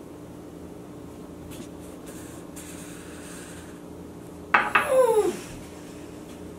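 A few faint clinks and handling sounds from a small glass, then a loud vocal cry from a child that slides down in pitch for about a second, a reaction to the sour pickle juice.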